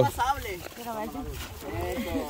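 Quieter voices of people talking in the background, no nearby speaker.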